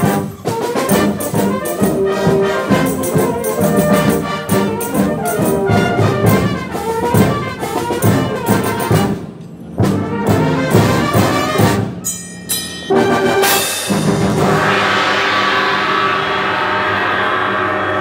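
Brass band with percussion playing a lively, rhythmic piece, sousaphones and euphoniums underneath the trumpets. It breaks off briefly twice, then holds a long chord with a cymbal crash washing over it near the end.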